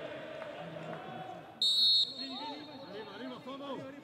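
A referee's whistle blown once, short and high, about one and a half seconds in. Before and after it, players shout to each other across a nearly silent, crowdless stadium.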